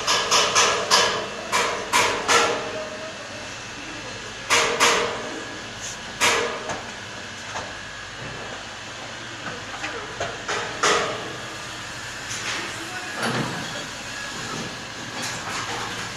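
Irregular loud knocks and clanks, like metal being handled or struck, over a steady machinery hum, with voices in between. The knocks come in a quick cluster at first, then singly every few seconds.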